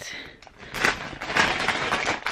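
Handling noise: rustling with a quick run of knocks and crackles, starting about half a second in, as the camera is jostled close against clothing.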